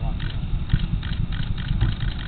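Outdoor night ambience: an uneven low rumble runs throughout, with faint high chirps repeating several times a second.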